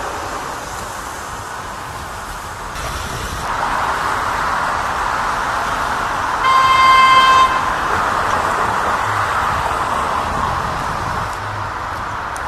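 A vehicle horn sounds once, a single steady tone lasting about a second, over steady street traffic noise that swells a few seconds in.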